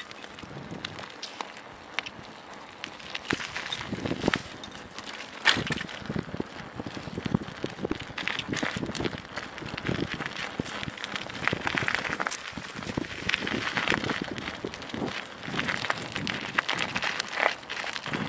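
Mountain bike rolling fast over a gravel and dirt track, tyres crunching and the bike rattling with irregular clicks, busier from about five seconds in.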